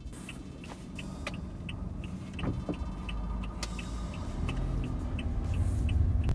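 Car being driven, heard from inside the cabin: a steady engine and road rumble that grows louder toward the end. A light, even ticking about three times a second runs through it.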